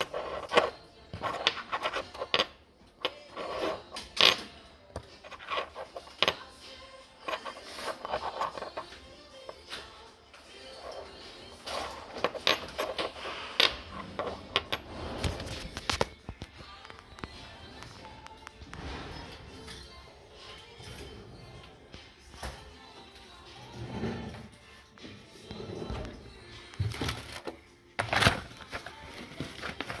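Irregular clicks, taps and knocks of small metal jet-engine blades and their clear plastic packaging being handled, over background music.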